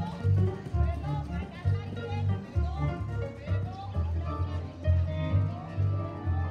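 Country-style music with plucked guitar over a steady bass beat, with a voice over it.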